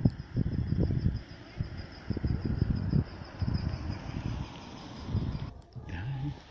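Wind buffeting the microphone in irregular low gusts, over a faint, steady, high-pitched pulsing whine. The sound cuts out briefly near the end.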